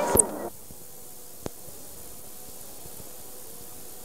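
Home-video recording cutting off: outdoor voices stop abruptly about half a second in, leaving a steady low tape hiss with a single click about a second and a half in.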